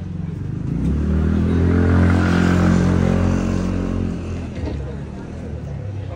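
A motor vehicle's engine passing close by on the street, growing loud about a second in, loudest around two to three seconds, then fading away.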